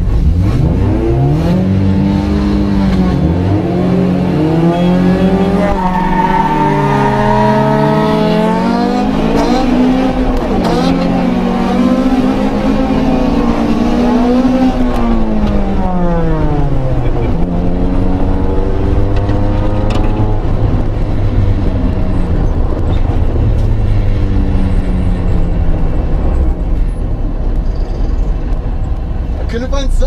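Honda four-cylinder engines launched in a drag race, the revs climbing with a dip at a gear change. About halfway through the revs fall steeply as the car slows, then settle into a steady drone.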